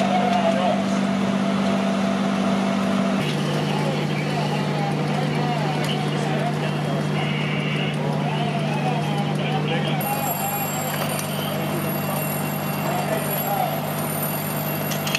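Fire apparatus diesel engines running steadily, a constant low drone that drops in pitch about three seconds in and shifts again near ten seconds, with indistinct voices over it.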